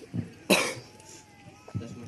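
A person coughing: one sharp cough about half a second in, with a couple of fainter, throaty sounds before and after it.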